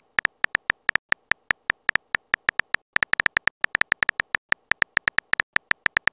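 Phone keyboard typing sound effect: a quick, uneven run of short, high-pitched clicks, one per letter, as a text message is typed out.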